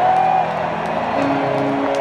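Live rock band's electric guitar holding long, steady notes between songs over the noise of a large stadium crowd.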